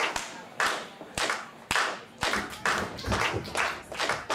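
Rhythmic hand clapping, about two claps a second, the encouraging clapping of a fighter's cornerman. A few dull low thuds sound underneath.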